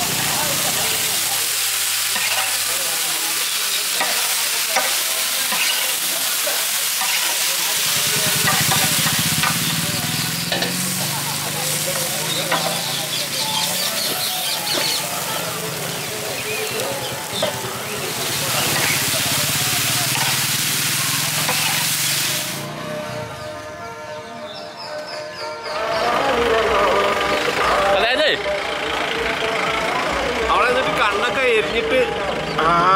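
Pieces of fish sizzling in oil on a large flat griddle while a spatula turns them. The sizzle cuts off about 22 seconds in.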